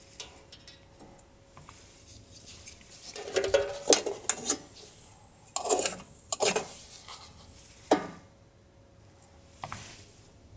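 A flat cut-out shape on its hanging pin is handled: unhooked, turned and rehung from another corner. This gives clusters of rattling, clinking knocks about three to four and a half seconds in and again around six seconds, then single knocks near eight seconds and near the end.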